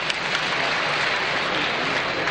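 Arena audience applauding for a gymnast on the balance beam: a steady wash of many hands clapping.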